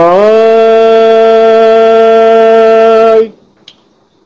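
A man singing one long unaccompanied note. It slides up a little at the start, holds steady for about three seconds, then stops.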